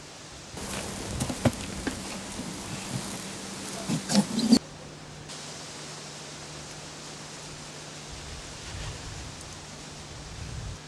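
Rustling and a few sharp knocks for about four seconds, cutting off abruptly, then a steady even rubbing hiss: an axe blade being scrubbed clean by hand.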